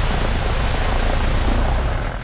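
Piper PA-18 floatplane's 150-horsepower engine and propeller running during water taxiing, heard as a steady rush of noise with a low drone underneath.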